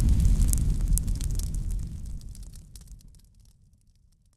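Logo-intro sound effect of a fiery boom dying away: a low rumble with scattered crackles that fades out about three seconds in.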